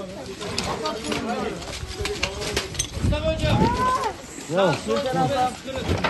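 Several rescue workers' voices calling out and talking over one another, with scattered knocks and rustling from handling. One voice rises in a call about three and a half seconds in.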